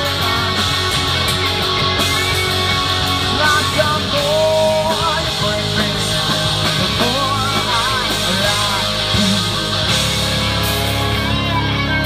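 Live punk rock band playing an instrumental passage: distorted electric guitars, bass and drum kit, with a lead line bending and wavering in pitch from about four seconds in.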